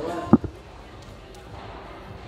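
A single padel ball bouncing on the court floor: one short, low thud about a third of a second in, followed by faint steady hall ambience.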